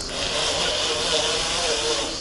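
Electric drive motor of a homemade electric cargo bike running under power on test after its electrics were rebuilt: a steady hiss with a faint, slightly wavering whine underneath.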